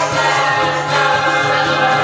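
A man and a woman singing together into microphones over loud backing music.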